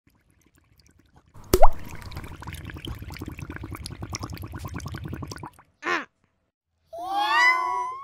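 Logo sound effects. A sharp liquid plop about one and a half seconds in is followed by a few seconds of dense crackling and a short bubbly blip. Near the end comes a cat meow with a rising pitch.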